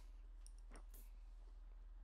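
Near silence in a pause between speech: a steady low hum with a few faint clicks about half a second to a second in.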